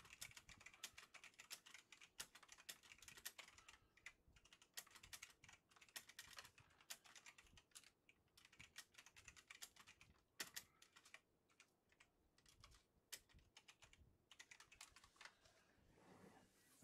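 Faint typing on a computer keyboard: a quick, irregular run of key clicks that goes on with brief pauses.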